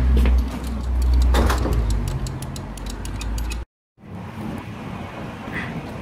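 Outdoor street sound: a heavy low rumble of wind on the microphone with scattered light clicks, cut off suddenly a little past halfway by a moment of silence, then quieter city traffic noise.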